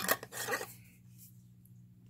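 A candle jar being handled: a click, then about half a second of rubbing and rasping. After that only a faint steady low hum remains.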